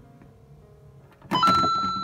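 Super Mario question-block lamp tapped on and playing its two-note coin chime about a second and a half in: a short lower note, then a held, bright higher ding that fades.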